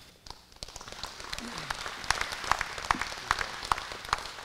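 Audience applauding. The clapping starts a fraction of a second in and builds within the first second to a steady patter of many hands, with single claps standing out.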